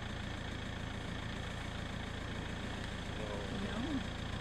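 Steady low rumble with a haze of hiss, unchanging throughout.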